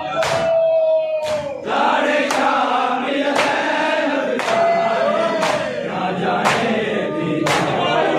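A large group of men chanting a noha (Urdu lament) in unison, with collective matam: bare hands slapping chests together in a sharp strike about once a second.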